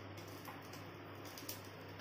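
Mustard seeds in hot oil in a steel kadai, faintly ticking and crackling as they begin to heat.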